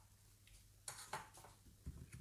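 Near silence in a small kitchen, broken by a few faint clicks of a spoon being handled about a second in.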